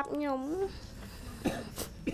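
A girl's voice into a handheld microphone, her words ending about half a second in, followed by two short, sharp, tearful sniffs.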